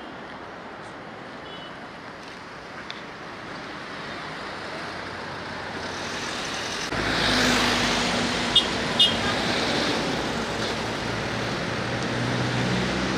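Street traffic noise, faint at first, then louder from about seven seconds in as a vehicle engine runs close by with a steady low hum. Two short high chirps come near nine seconds.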